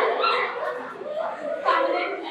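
A girl's voice, speaking and laughing into a handheld microphone.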